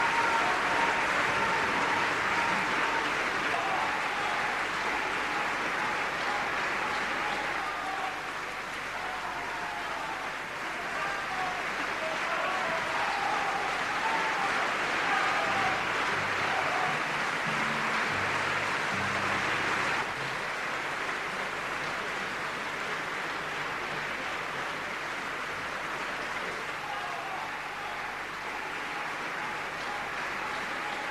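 A large audience applauding steadily, a dense even clapping that eases slightly over the half-minute.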